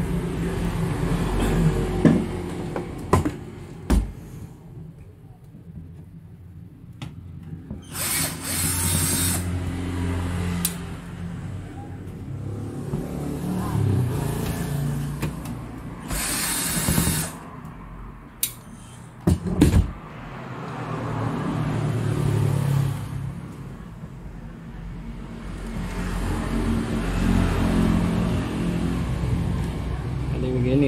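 Disassembly of a satellite receiver's metal chassis to take out its power-supply board: scattered clicks and knocks of handling, and two short power-tool bursts, a little over a quarter of the way in and again just past the middle, over a steady low rumble.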